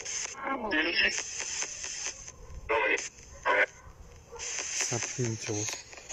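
Short, scattered fragments of voices, a second or less each, over a high hiss that cuts in and out.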